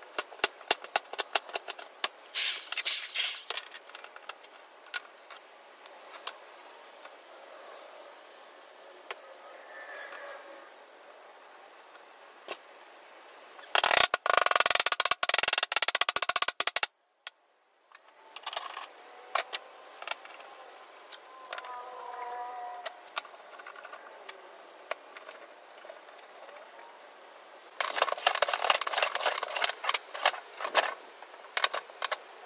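Steel wood chisel paring the corners of a routed recess in white oak, making sharp irregular clicks and taps. A wooden mallet drives the chisel in a loud, dense run of strikes about halfway through, which cuts off abruptly. Another quick run of taps and scrapes comes near the end.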